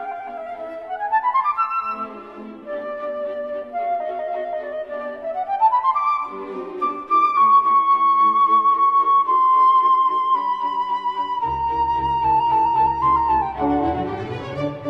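Instrumental background music: a slow melody with sliding, held notes over steady chords, with a bass line coming in near the end.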